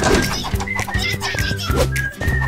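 Cartoon background music with a sudden hit at the start, overlaid by a cartoon character's wordless, high-pitched vocal sounds.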